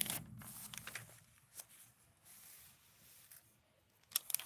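Glossy magazine pages being turned by hand: a paper rustle over about the first second, a small tap a little later, then quiet handling.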